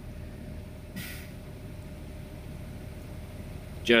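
A steady low mechanical hum or rumble with a faint constant tone in it, and one short hiss about a second in.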